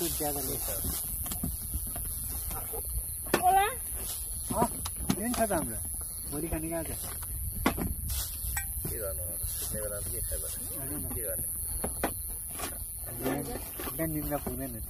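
Several people talking casually, their voices coming and going, with a few sharp clicks and a steady high hiss behind them.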